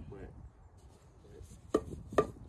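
A section of green bamboo tube knocked once against the ground near the end, a sharp knock with a short ring.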